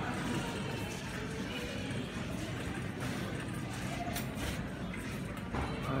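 Supermarket background ambience: faint in-store music and distant voices over a steady low murmur of the shop.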